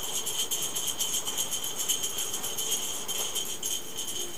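Rapid, even metallic jingling, like small bells being shaken, going on steadily at a quick shaking rhythm.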